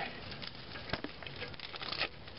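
Gloved fingers working at the rubber dust plug in a drum-brake backing plate: faint rustling and scraping with small clicks, and one sharper click about a second in.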